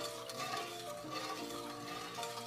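Soft background music with held notes, over faint stirring of a wooden spatula in a metal wok of coconut milk and sugar.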